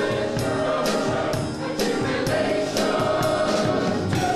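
Salvation Army songster brigade, a mixed choir of men and women, singing a song with a beat marked by regular short strikes running under the voices.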